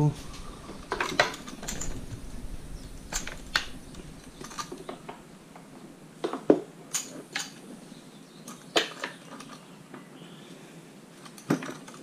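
Irregular clicks and knocks of a Springfield Armory M1A SOCOM 16 rifle in its polymer composite stock being lifted and turned over in a cleaning cradle, about a dozen in all.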